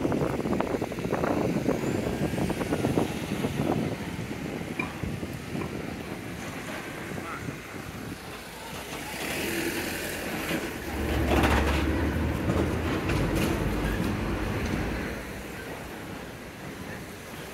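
Busy street sounds: passersby talking in the first few seconds, then a box van's engine running as it drives past close by, loudest about two-thirds of the way in.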